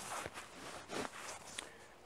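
Rustling of clothing and a folding camp chair as a seated person shifts his weight, with a sharp click at the start and a few softer ticks.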